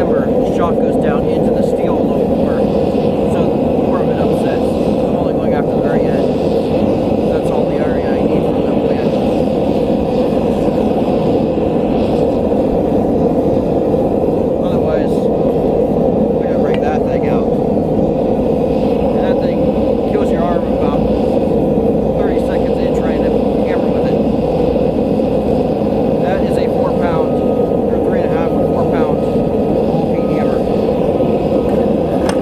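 Gas forge burner running with a steady, even roar.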